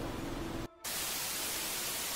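Electronic static hiss, like TV white noise, cutting in suddenly just under a second in after a moment of low room tone: the sound of a glitch transition effect.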